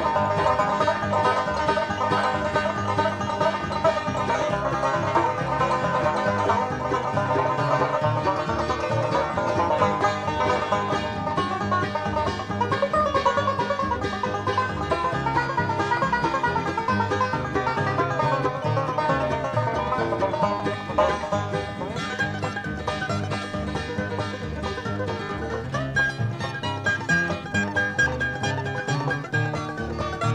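Live bluegrass band playing a banjo instrumental: five-string banjo picking the lead over a steady bass and guitar backing.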